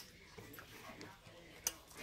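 Faint, low voices in a quiet space, with one short sharp click about three-quarters of the way through.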